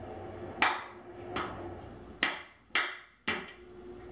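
Kitchen range hood switches clicking five times as the hood is tested, with the hood's fan humming steadily between clicks and cutting out briefly when it is switched off.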